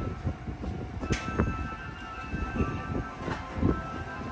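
Electric commuter train running on the rails: a low, uneven rumble with irregular knocks and a sharp click about a second in, over a faint steady whine.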